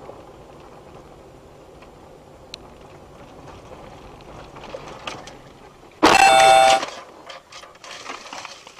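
Steady tyre and engine rumble from a car driving a dirt track, then a car horn sounds once for just under a second about six seconds in, as an oncoming car appears head-on. Scattered short crackles follow near the end.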